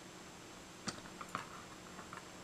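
A few light clicks and paper rustles from hands pressing a glued magazine cutout flat onto a collage page with a small hand tool, the first just before a second in and a couple more shortly after, over quiet room tone.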